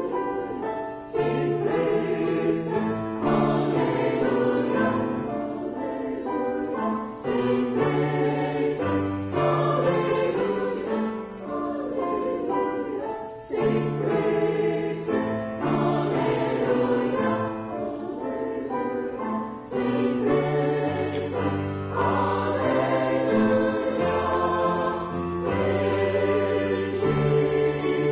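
Mixed choir of men's and women's voices singing in parts, phrase after phrase with short breaks for breath between.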